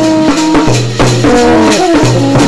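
Festival brass band playing loud and close: euphoniums carry a melody over a steady low note, with a shaker-like rattle and drum keeping an even beat.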